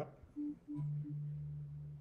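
Pure, sine-like synthesized tones from an Empress ZOIA granular patch: three short repeated blips, then two low notes held together from about three quarters of a second in. The patch's two granular modules are running with one module's comparator sensitivity just turned back up.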